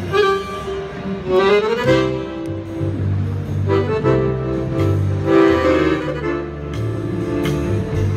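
Two accordions playing a lively tune together live, the low bass notes pulsing under the melody, with a quick rising run of notes about one and a half seconds in.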